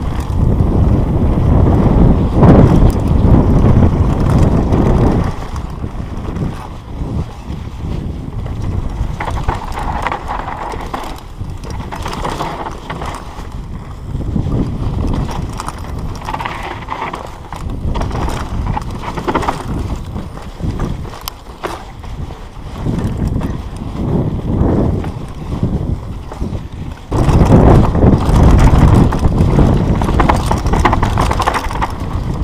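Mountain bike riding fast down a dry dirt trail, heard from a GoPro on the rider: a rushing noise with tyres and bike clattering over rough ground. It is loudest in the first five seconds and again from about three seconds before the end, quieter in between.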